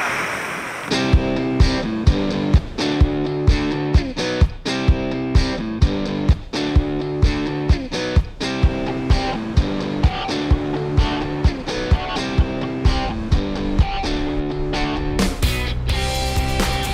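Background music: a guitar track with a steady beat of about two beats a second, coming in about a second in and changing near the end.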